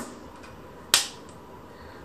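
A single sharp snap-like click about a second in, dying away quickly, over quiet room noise.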